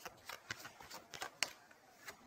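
Tarot cards being shuffled by hand: a quick, irregular run of soft card flicks and taps, the sharpest about one and a half seconds in.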